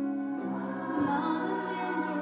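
Live musical-theatre song with held choir chords over the accompaniment, sustained and steady.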